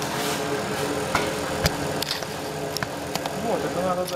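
Paint spray gun hissing steadily as compressed air sprays paint, with a low steady hum underneath and a few light clicks.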